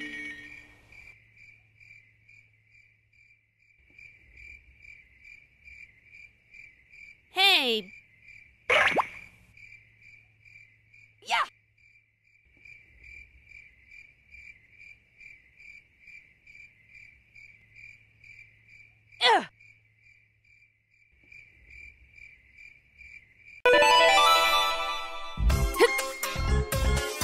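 Crickets chirping in a steady, evenly pulsing high trill, a night ambience effect. A few short voice blips break in, and music starts near the end.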